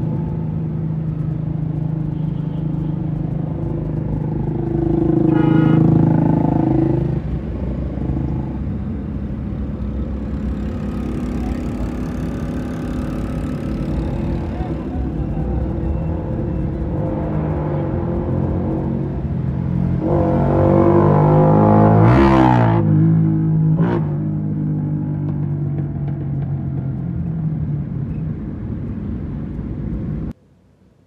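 City traffic heard from inside a moving car: steady engine and road noise with motorcycles around. Two louder swells with rising and falling pitch come about five seconds in and, loudest, about twenty seconds in, as vehicles rev or pass close by.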